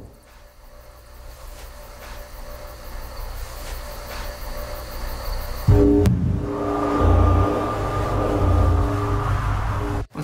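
Horror film score: a low rumbling drone slowly grows louder, then about six seconds in a much louder swell of several held tones over a deep rumble comes in suddenly.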